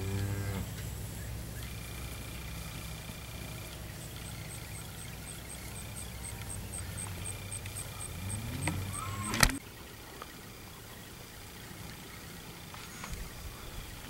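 Steers lowing: a moo tailing off at the very start and another rising moo near the nine-second mark, cut off by a sharp click. A steady low rumble runs underneath until the click.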